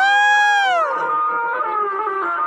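A male singer holds one long, high sung cry of "oh" into the microphone. The note swells, then slides down and ends about a second in, over continuing backing music.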